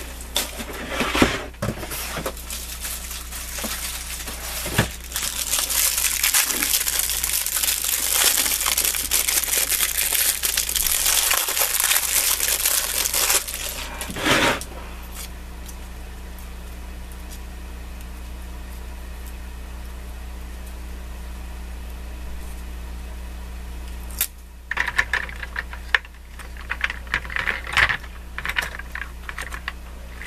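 Spent tape-runner backing tape being crumpled and rustled for about thirteen seconds, then a lull, then irregular plastic clicks and light knocks near the end as a new refill cassette is fitted into the tape runner.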